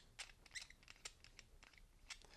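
Near silence with a few faint, scattered clicks from the threaded filter fitting on the compressor's high-pressure hose being unscrewed by hand.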